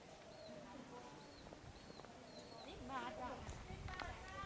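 Faint background voices of people talking, with a run of short high chirps repeating about twice a second in the first half.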